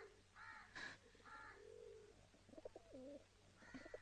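Faint bird calls: several short calls repeat through the quiet, more of them in the first half.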